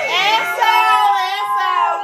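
Several voices singing together, holding long drawn-out notes.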